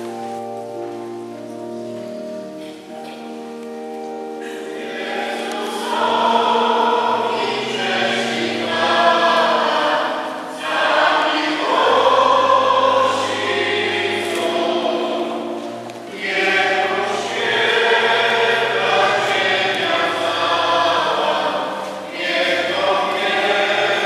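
Church organ playing a hymn with held chords and a low pedal bass line, joined about five seconds in by a choir singing with it.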